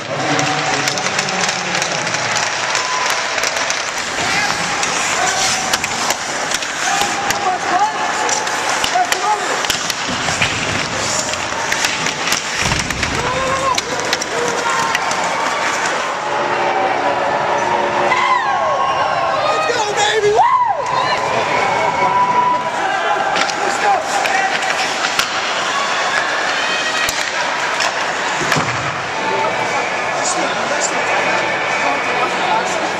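Ice hockey game in an arena: a crowd talking and calling out over the clack of sticks and puck and the scrape of skates on the ice, with many sharp knocks throughout.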